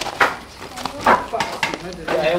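Split firewood logs knocking against each other as they are handled and stacked: a handful of sharp wooden knocks, the loudest about a second in.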